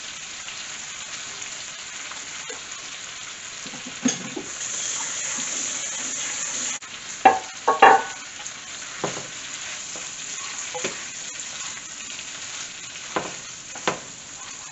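Chickpeas sizzling in a hot nonstick skillet as a steady hiss, louder for about two seconds in the middle before dropping suddenly. Several short knocks and scrapes of a spatula in the pan stand out, the loudest just past halfway.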